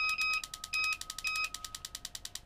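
Spark plug tester machine running at a 700 RPM idle: the plugs sparking in a fast, even ticking, about twelve snaps a second. A high whine sounds alongside, breaking up and stopping about one and a half seconds in.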